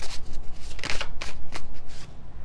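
A deck of tarot cards being shuffled by hand: a quick, irregular run of papery slaps and flicks as the cards strike one another.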